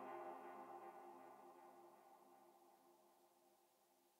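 The track's final keyboard chord, a faint electric-piano sound, rings out and fades away, dying into silence near the end.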